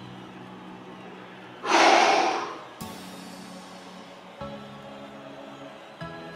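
Background music of held chords, with one loud, forceful breath out from a man straining through an abdominal exercise, about two seconds in.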